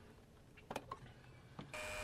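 Near silence with a couple of faint small clicks as an extension-cord plug is pushed into an outlet. Near the end the sound changes suddenly to a steady hum with a faint steady whine.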